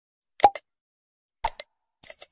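Mouse-click sound effects from an animated subscribe button: a louder quick double click with a short pop about half a second in, then a fainter double click about a second later.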